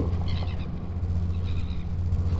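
Royal albatross chick giving a short, high call about half a second in, and a fainter one later, over a steady low hum.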